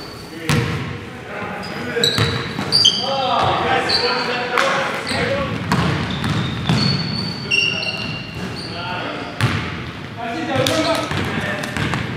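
Basketball bouncing on a gym's hardwood floor and sneakers squeaking in short high chirps as players run and cut.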